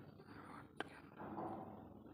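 Faint, indistinct voice-like murmur, with a single sharp click a little before halfway through.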